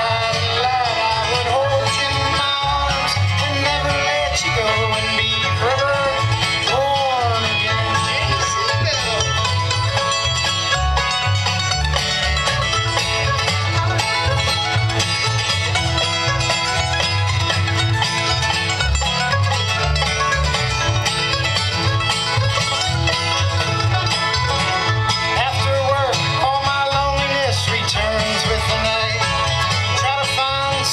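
Live bluegrass band playing: banjo, mandolin, fiddle, acoustic guitar and upright bass.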